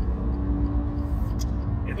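Steady engine and tyre drone inside a BMW M2's cabin cruising at motorway speed, a deep rumble with a steady low hum over it.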